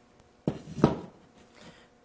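Two knocks about a third of a second apart, the second louder, from handling a steel trailer-light mounting bracket with a round light pressed into its rubber grommet.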